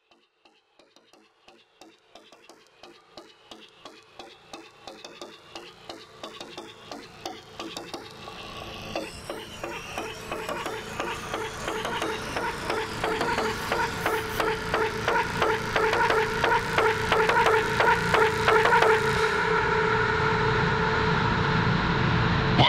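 Slowed and reverb edit of a midtempo electronic track fading in from silence: a steady rhythmic pulse with sustained tones, growing steadily louder.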